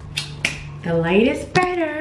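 Two sharp finger snaps, then a woman's voice sliding upward and holding one long sung note.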